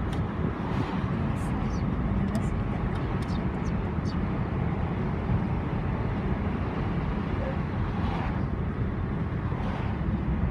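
Steady rush of wind and road noise from a car driving with its windows open, the wind buffeting the microphone at the open window.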